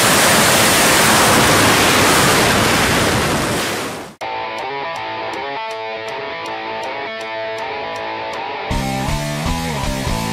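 Loud, steady rush of wind and slipstream on the microphone at the open door of a skydiving plane in flight, fading out about four seconds in. Electric-guitar rock music then starts, with deeper bass notes joining near the end.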